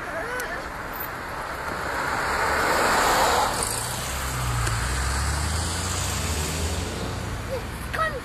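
Volvo XC60 emergency doctor's car passing close by: tyre and engine noise swells to a peak about three seconds in and fades, followed by a lower engine rumble from following traffic.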